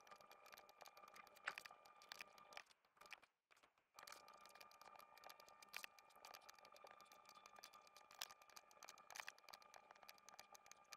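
Near silence: faint room tone with scattered faint clicks of a computer mouse and keyboard as points are clicked in, dropping out entirely for about a second around three seconds in.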